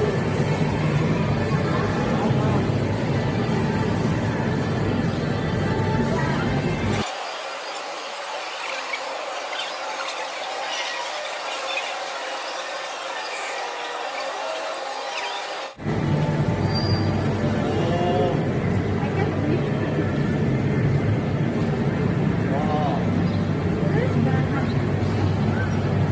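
Loud indoor arcade din: game-machine music, background chatter and a steady low hum. For several seconds in the middle the low hum drops away and it is quieter, before the full din returns.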